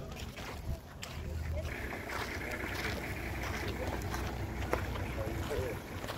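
Wind rumbling on the microphone, with faint voices of people talking in the distance.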